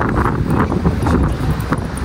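Wind buffeting a phone's microphone in a loud, uneven low rumble, with short rustles as the phone is swung about against a leather jacket.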